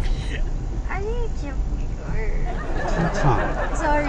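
Passengers laughing and talking inside a moving car's cabin, over the steady low rumble of road noise. A woman says "sorry, sorry" near the end.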